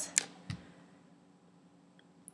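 Two brief clicks in the first half-second, the second with a soft low bump, then near silence: room tone.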